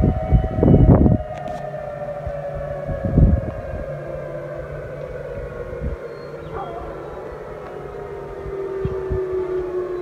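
Outdoor tsunami warning siren sounding one long, steady tone that slowly falls in pitch, with a few low bumps on the microphone in the first second.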